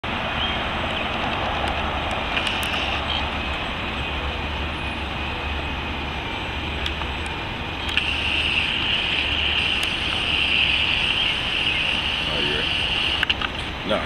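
Outdoor city ambience: a steady wash of distant traffic noise, with a high hiss that grows louder about eight seconds in.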